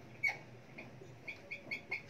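Whiteboard marker squeaking across the board as words are written: a run of short, faint, high squeaks, about six in two seconds.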